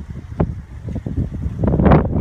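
Wind buffeting the microphone in uneven gusts, a low rumble that swells and fades, loudest near the end.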